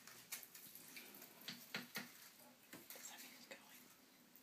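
Near silence: a few faint scattered ticks and light water sounds around the small boat in the tub.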